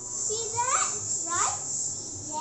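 A young boy's voice, high-pitched and rising sharply twice in quick succession, without clear words.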